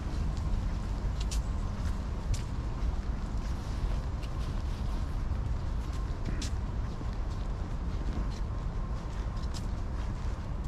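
Steady low rumble of city street noise, with a few faint, scattered light clicks.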